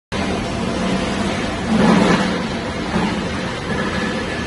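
Tape-manufacturing machine running steadily, a continuous mechanical noise with a low hum, swelling louder for a moment about two seconds in.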